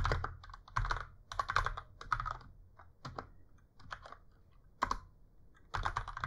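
Typing on a computer keyboard in short bursts of clicking keystrokes, with a lull of about a second and a half after the middle.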